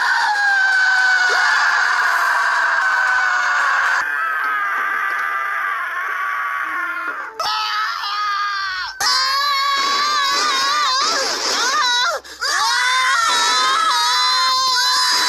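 Screams from cartoons and films spliced back to back: a long scream slowly falling in pitch over the first four seconds, then shorter screams separated by abrupt cuts. From about nine seconds in, several high voices scream together, their pitch wavering.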